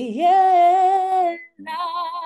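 A woman singing a Papiamento hymn unaccompanied, holding one long note with vibrato, then starting a second held note after a short break.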